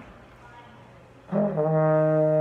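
Trombone playing a held E-flat in third position, a single steady note that comes in after about a second of quiet, its attack starting slightly high before it settles.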